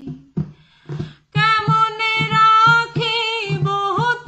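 A woman singing a Bengali Baul folk song over a steady low drum beat. Her voice stops for about a second near the start, then comes back on a long held, wavering line.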